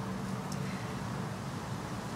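A steady low hum over faint background noise.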